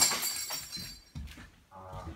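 A sudden crash of breaking glass, its high ringing dying away over about half a second.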